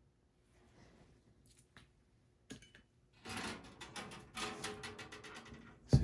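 Near silence for about three seconds. Then hands handle the computer parts and the steel case: rustling with many light clicks and a little clatter.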